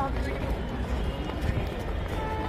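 Footsteps walking on a paved path, about two steps a second, among the talk of a crowd of people.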